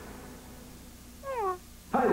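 A cat meows: one short call falling in pitch a little over a second in, over a faint hum, and a louder cry starts just at the end.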